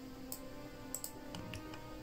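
Quiet background music with steady held tones, and a few faint computer-mouse clicks scattered through it.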